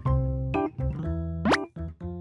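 Background music: light keyboard-like notes in short steps, with a quick rising sliding sound effect about three-quarters of the way in.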